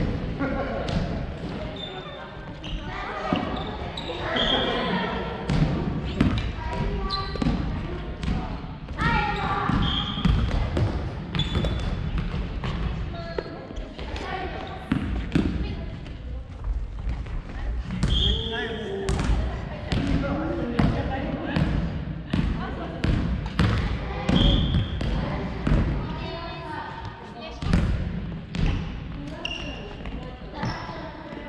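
Family badminton play in a gym hall: repeated sharp hits of the short rackets on the shuttle and footsteps on the wooden floor, with a few brief high shoe squeaks. People's voices carry through the hall in between.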